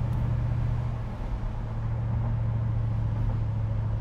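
Supercharged 5.4-litre V8 of a 2002 Mercedes-Benz SL55 AMG pulling at a steady low drone under way, heard from inside the open-top cabin with road and wind noise around it.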